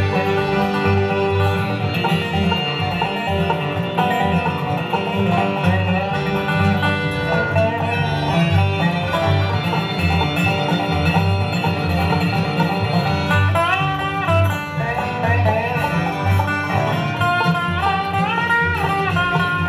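Live acoustic bluegrass band playing an instrumental break with banjo, acoustic guitar, fiddle, dobro and upright bass, the bass keeping a steady pulse. Sliding lead notes come in about two-thirds of the way through and again near the end.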